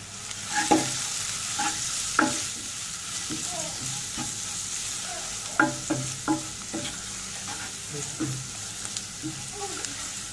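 Sliced onions and ground spices frying in hot oil in a pot, with a steady sizzle that comes up about half a second in, while a wooden spoon stirs them, making a string of scrapes and light knocks against the pan.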